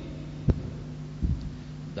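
A steady low electrical hum from the recording or sound system, with one sharp knock about half a second in and a softer low thump a little after one second.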